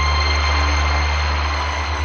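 Dark progressive house music: a sustained deep bass drone with steady high tones under a swelling wash of noise, the bass starting to pulse near the end.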